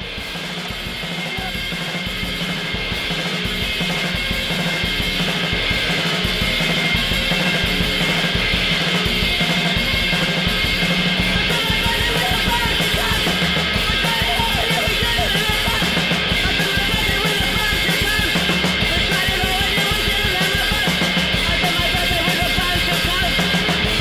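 Background music: a rock track with drum kit and guitar, fading in over the first few seconds and then steady.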